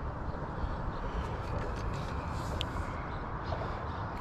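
Steady outdoor background noise, mostly a low rumble, with a few faint clicks and one brief high chirp a little past halfway.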